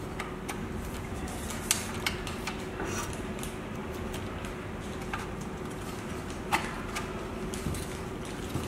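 Scattered light clicks and taps of an end cap being fitted onto the end of an aluminium LED profile, over a steady faint hum.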